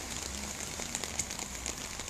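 Steady hiss of rain and running floodwater on a flooded street.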